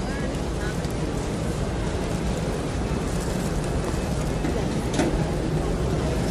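Busy airport departures hall ambience: a steady low rumble with faint, scattered voices of the crowd, and a brief click about five seconds in.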